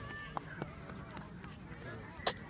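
Indistinct background voices, faint and unclear, with two short clicks in the first second.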